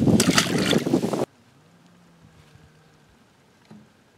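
Wind rushing over the microphone on open water, cutting off abruptly about a second in. After that it is very quiet, with only a faint low hum.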